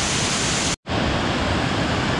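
Waterfall: water cascading over rock ledges in a steady rush. The sound drops out for a split second just under a second in, then goes on a little duller, with less hiss.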